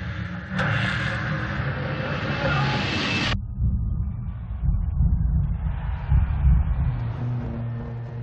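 Dirt modified race car engine rumbling low and steady. Over it, a rising rush of noise cuts off suddenly about three seconds in. Near the end a steady drone of tones joins the rumble.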